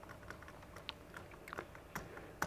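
Faint, irregular clicks and taps on a Sony VAIO laptop's keys as slides are paged back and forth, with a few louder key presses toward the end.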